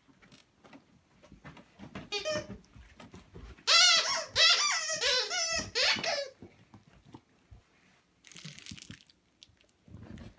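Squeaky dog toy being chewed, giving a short run of squeaks about two seconds in, then a longer, louder run of squeaks that rise and fall in pitch from about four to six seconds in.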